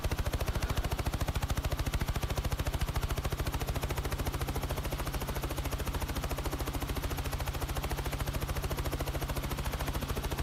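News helicopter cabin noise picked up by the cockpit microphone: the main rotor beating in a rapid, even pulse over a steady low hum.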